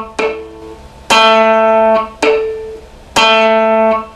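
Electric guitar, played clean, alternating muted dead-note clicks with a fretted note on the fourth string at the seventh fret. A short click comes first, a ringing note about a second in, another click, then the note again near the end.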